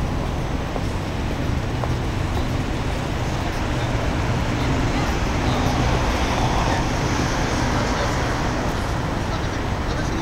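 Steady hum of city road traffic.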